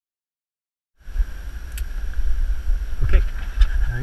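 A dog giving two short, rising whines about three seconds in, over the low rumble of wind and handling noise on an action-camera microphone. The first second is silent.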